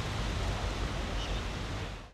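Steady rushing background noise with a low rumble and no distinct events: outdoor ambience such as wind or distant traffic, with no single clear source.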